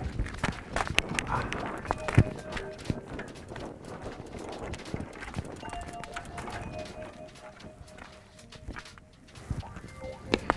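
Cleated cycling shoes clicking and crunching on roadside gravel as a rider walks a road bike and leans it against a signpost, in irregular steps and taps, busier in the first half.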